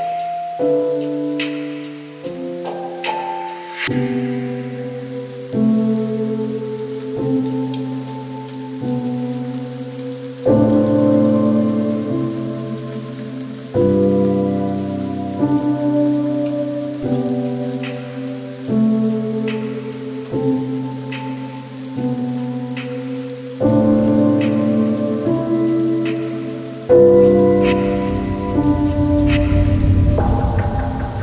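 Slow, soft piano chords, each struck and left to fade, over a steady patter of rain. A low rumble of thunder comes in near the end.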